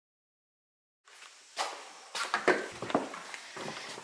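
Dead silence for about a second, then scattered knocks and rustles of someone moving about in a quiet room.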